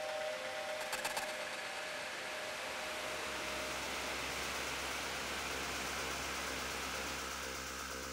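Experimental electronic music made on laptops and synthesizers: held tones fade out with a few glitchy clicks about a second in, giving way to a steady wash of noise over a low drone that builds after a few seconds.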